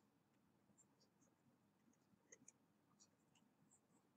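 Near silence, with a few faint ticks of a stylus writing on a digital pen tablet.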